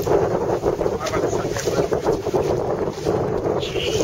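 Strong wind buffeting the microphone in uneven gusts, over the rush of choppy water around a boat.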